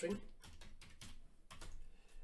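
Typing on a computer keyboard: a quick run of separate key clicks as a word is typed.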